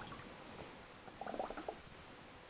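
Faint splashing and dripping of water as an anodised aluminium tube is dunked in a bucket of distilled water to rinse off the acid, with a few brief splashes just past the middle.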